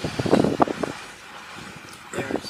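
Low, steady road and engine noise of a car driving slowly, heard from inside, with wind on the microphone. Brief indistinct voice-like sounds in the first second.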